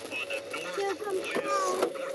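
Voices from a live TV weather broadcast heard over a radio in the car, unclear and broken, with a steady tone running underneath.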